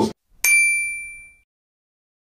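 The music cuts off, then a single bright bell-like ding sounds about half a second in and rings away over about a second: an end-screen sound effect.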